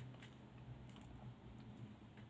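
Near silence: room tone with a faint low hum and a few faint, scattered clicks.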